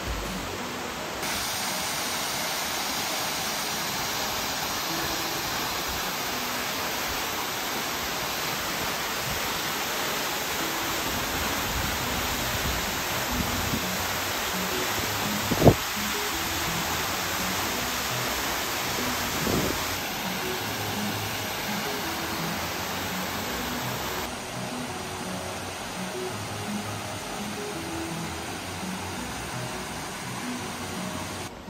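Mountain stream water rushing steadily down granite cascades into rock pools, with faint background music under it. A single sharp click about halfway through.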